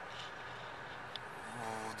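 Faint steady background hiss inside a car's cabin, with a faint click about a second in, then a man's drawn-out hesitation sound near the end.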